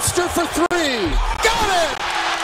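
A TV basketball announcer's excited, high-pitched voice calling the play over steady arena crowd noise.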